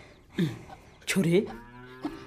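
Low, drawn-out animal calls: a short one falling in pitch about half a second in, then a longer one held on a steady pitch through the second half.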